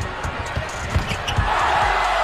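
Basketball dribbled on a hardwood arena court, a run of low thumps, with the arena crowd's noise swelling about three quarters of the way through.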